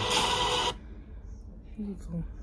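A burst of harsh noise, under a second long, that starts and stops abruptly; a faint voice follows near the end.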